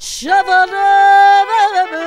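A high sung voice, part of the music score, swoops up into a long held note and wavers near the end. A short hiss comes at the very start.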